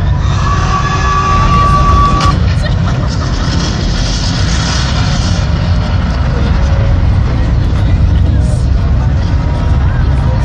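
Deep, steady rumbling from a stadium concert's sound system, with a large crowd's chatter. A thin high tone sounds from about half a second in until just past two seconds.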